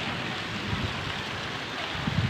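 Continuous rain falling on a street, a steady even hiss, with a few brief low thuds about a second in.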